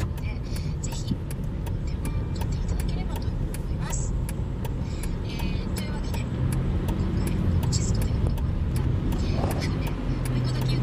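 A car being driven, heard from inside the cabin: a continuous low rumble of engine and tyres, with scattered short ticks over it.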